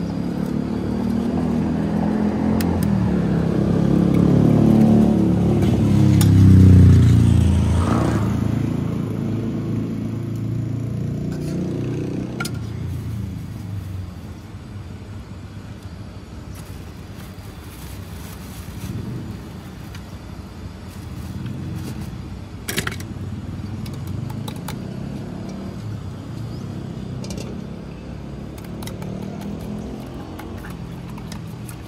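A motor vehicle passing on the road, its engine rumble swelling to a peak about seven seconds in and then fading into a steady traffic hum. A few sharp clinks of a metal spoon in a steel cup come later, the clearest about three quarters of the way through.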